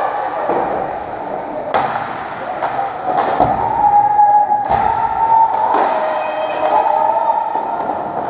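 Roller hockey play: about half a dozen sharp knocks and thuds of sticks, ball and rink boards, echoing in a large sports hall. Under them runs the steady din of indistinct shouting.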